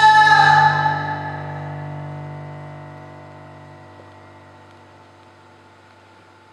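Live ballad: a long held high note ends about a second in, and the band's sustained chord then fades slowly away, leaving a quiet pause.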